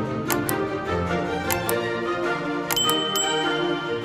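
Background music overlaid with the sound effects of a subscribe-button animation: several short clicks, then a high bell-like ding near three seconds in.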